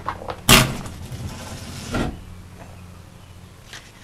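A white painted door being pulled open by its knob: a sharp clunk about half a second in, then about a second and a half of dragging noise that ends in a second knock.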